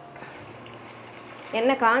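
Water heating in a nonstick frying pan, giving a soft steady hiss of small bubbles as it comes toward the boil; a woman starts talking about a second and a half in.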